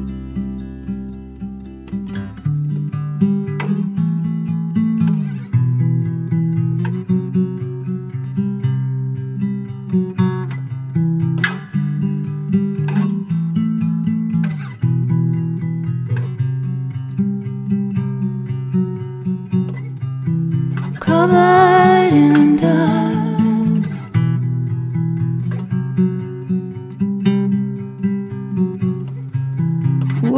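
A song's instrumental passage led by plucked acoustic guitar over low sustained notes, with a short sung phrase about two-thirds of the way through.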